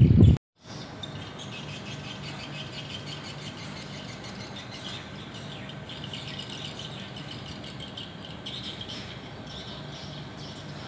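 Birds chirping over a faint steady low hum, with many short chirps. A loud low rumble cuts off suddenly a moment in, followed by a brief silence before the chirping begins.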